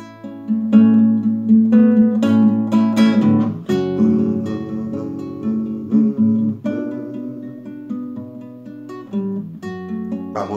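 Nylon-string classical guitar played alone, strummed and plucked chords with a change of chord every few seconds.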